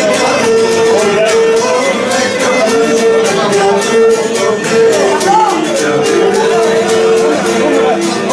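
Live Cretan folk music: a bowed lyra melody with a recurring held note, over a steady strummed laouto beat, with the chatter of the crowd underneath.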